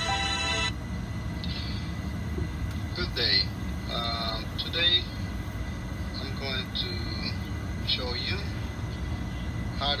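Music cuts off abruptly under a second in. After that a person's voice speaks in short, scattered phrases over a steady low rumble.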